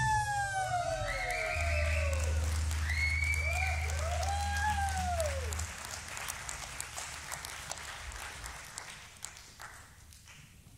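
Audience applause and cheering right after a live band stops playing, with several drawn-out rising-and-falling whoops over the clapping. A low hum stops about six seconds in, and the clapping dies away toward the end.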